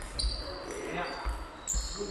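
Table tennis play during a fast footwork drill: the celluloid-type ball being hit and bouncing, rubber-soled shoes squeaking on the sports hall floor, and thudding footsteps.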